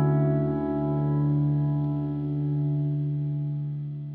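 Electric guitar, a Fender Telecaster in drop D tuning played through effects pedals with chorus, holding one chord that rings on and slowly dies away.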